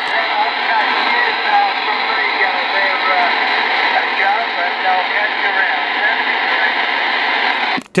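Receiver audio from an RCI-2980WX transceiver on 27 MHz skip: steady band static with a weak, garbled voice of a distant station coming through under the noise. It cuts off just before the end when the operator keys up.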